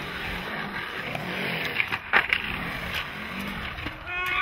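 Skateboard wheels rolling over the concrete of a skatepark bowl, a steady rumble that rises and falls in pitch with the skater's speed. A sharp clack about two seconds in, with a few lighter clicks.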